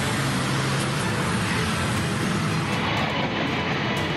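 Busy street traffic, mostly motor scooters with some cars, with engines running as they pass in a steady, dense roar of road noise.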